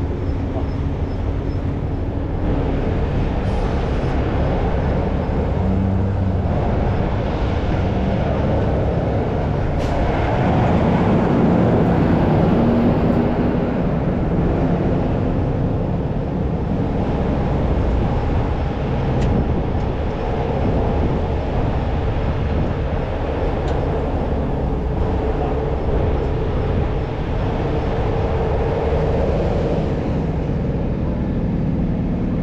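Heavy tow truck's diesel engine running steadily close by, swelling louder for a few seconds in the middle, with a few light clicks.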